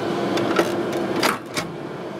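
Clicks and a knock as the oven door of an Agilent gas chromatograph is unlatched and swung open, over the instrument's steady hum; the hum drops away just after the knock, about a second and a half in.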